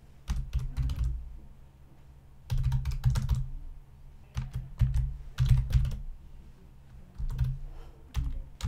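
Typing on a computer keyboard: about five short runs of keystrokes, separated by brief pauses.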